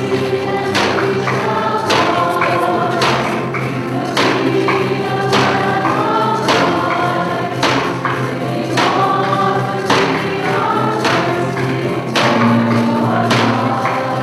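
Choir and congregation singing a processional hymn, with a steady percussion beat under the voices.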